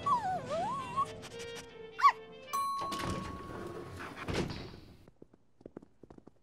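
Cartoon sound effects over background music: a small dog whines, its pitch dipping and rising again, and gives a sharp yip about two seconds in. Then a lift chime rings steadily for about a second and a half, and the lift doors open with a heavy thunk.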